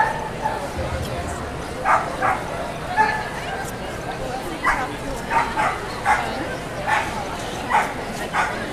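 Dog barks: about nine short, sharp yaps at irregular intervals, starting about two seconds in, over a steady hall murmur.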